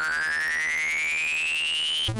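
Electronic synthesized tone gliding steadily upward in pitch, over a low buzzing pulse that repeats several times a second: a transition sound effect.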